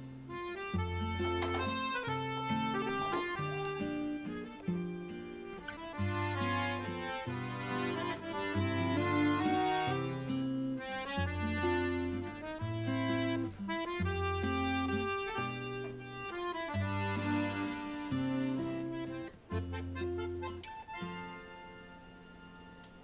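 Background accordion music: a melody over a bass-and-chord accompaniment with a regular pulse.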